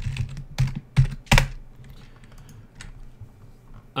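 Typing on a computer keyboard: a quick run of keystrokes, with two loud clacks about a second in, then a few scattered taps.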